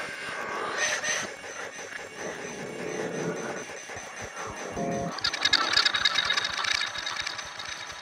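Electroacoustic music built from recorded frog calls processed with Kyma sound software, as a layered, shifting texture. About five seconds in comes a loud, dense burst of rapid pulses lasting a couple of seconds.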